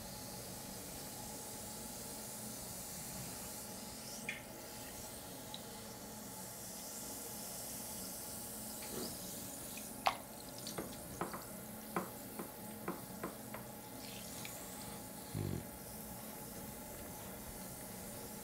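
Bath bomb fizzing in a basin of water, a faint steady hiss. From about ten seconds in, a hand moves in the water, making a run of small splashes and drips, and then a brief low bump.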